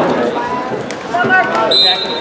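Voices calling out in a gym during a wrestling match, with a few short thuds and a brief high-pitched steady tone near the end.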